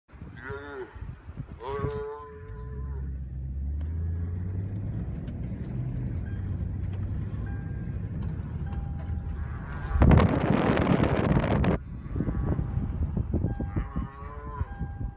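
A cow bellowing in distress while a grizzly bear attacks it: two calls in the first three seconds and another near the end. A low engine hum from the vehicle runs beneath, and a loud rushing noise lasts about two seconds starting around ten seconds in.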